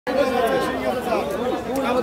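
Several people talking at once in a busy hubbub of overlapping voices.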